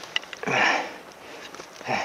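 One loud, sharp sniff-like breath close to the microphone about half a second in, after a few light clicks.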